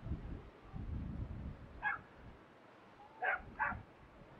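An animal calling in three short, sharp barks: one about two seconds in, then a quick pair near the end. Before the first call there is a low rumble.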